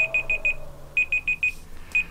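Digital alarm or timer beeping: rapid groups of about five short, high beeps at one pitch, a new group about once a second.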